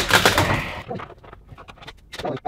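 Work on a stubborn kitchen cabinet handle: a second or so of close rustling and scraping noise that stops abruptly, then a few scattered light clicks and taps of the hardware.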